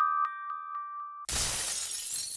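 Logo-sting sound effect: bell-like chime notes struck about four times a second, stepping down in pitch, then a little over a second in a loud glass-shattering crash that rings away.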